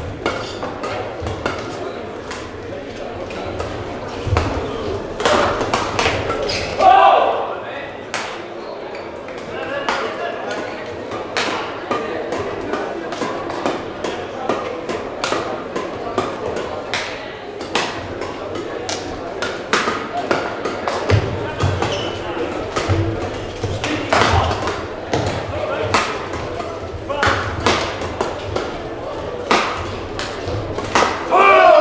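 Badminton rallies in a large hall: rackets striking the shuttlecock in a run of sharp cracks, with footfalls thudding on the court and voices between points.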